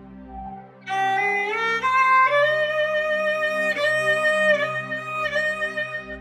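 Violin playing a slow Mishra Bhairavi dhun: it enters about a second in with a long upward slide, then holds sustained bowed notes joined by slides. A steady low drone sounds underneath.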